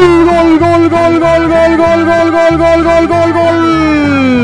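A man's long drawn-out shout, held on one pitch and sliding down at the end, over background music with a steady repeating bass beat.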